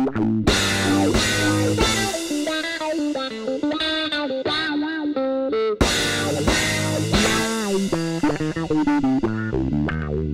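Instrumental rock-fusion track led by electric bass guitar playing fast melodic lines with bent notes, over drums. The band cuts out for an instant just before the six-second mark and comes straight back in loud.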